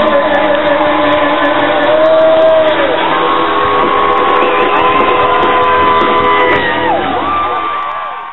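Live rock band playing, with long held notes that bend in pitch over the drums and some whooping from the crowd; the sound drops away near the end.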